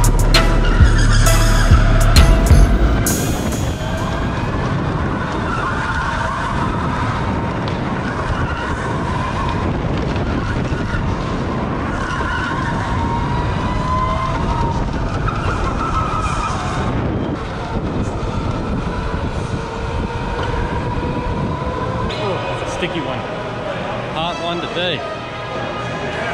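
Go-kart running on an indoor track, heard from on board: loud rumble and knocks for the first three seconds, then steadier running with wavering tyre squeal.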